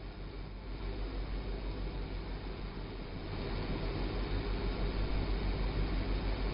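Steady low background rumble with an even hiss, growing slightly louder over the pause; no distinct event stands out.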